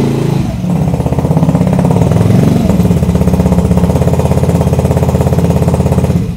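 Yellow Vespa motor scooter's engine running as the scooter rides up and pulls to a stop, then idling with an even putter for the rest of the time.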